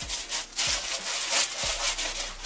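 Close rubbing and scraping handling noise in uneven strokes: fingers shifting a ring's cardboard display card right by the microphone.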